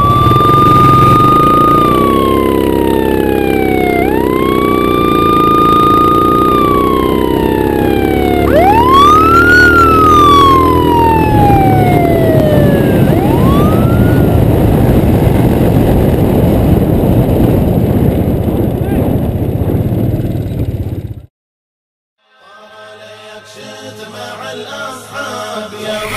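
A siren wails several times, each call rising quickly, holding briefly, then falling slowly, over the running of quad bike engines. Near the end the sound cuts off abruptly.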